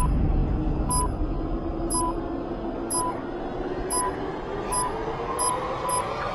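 Electronic beacon tracker beeping about once a second, the beeps coming faster over the last couple of seconds as the tracker closes in on the beacon. Under it runs a low rumbling drone that slowly rises in pitch.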